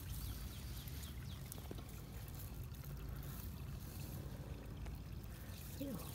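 Shallow spring-fed stream trickling faintly, with a few light ticks.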